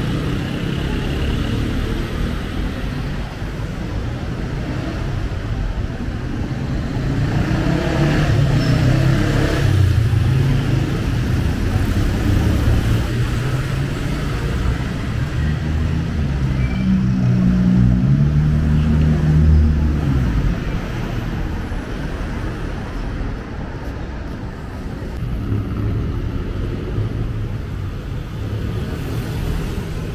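Road traffic on the street alongside: motor vehicle engines running and passing, swelling loudest about ten seconds in and again around eighteen seconds in.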